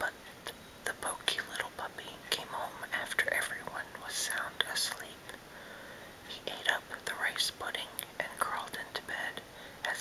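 A man whispering, breathy and unvoiced, with small mouth clicks between the words.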